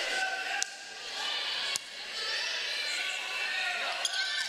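Volleyball play in a gym crowd: two sharp hits of the ball about a second apart, the serve and then the return, over a steady din of crowd voices.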